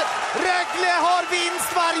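An excited TV commentator's voice, held and shouted in long drawn-out calls, over a cheering ice-hockey arena crowd just after a goal.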